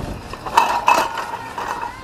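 Steel mounted plough clanking and scraping in the soil behind a tractor, with a cluster of sharp metallic knocks around the middle. The bent plough body is being forced against the ground to straighten it.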